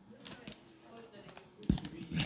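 Faint, irregular clicks and crinkles of a paper banknote being handled close to a handheld microphone, with a low thump near the end.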